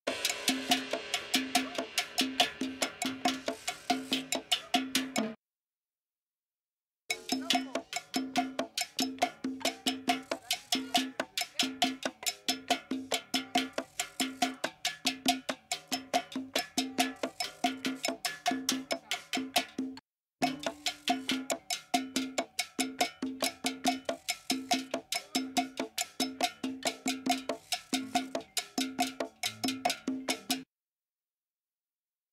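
Isolated cowbell-led percussion track, separated out of a full band recording. The strikes repeat in a fast, steady, looping pattern. It drops out for under two seconds about five seconds in, and cuts out again for a moment just past the middle.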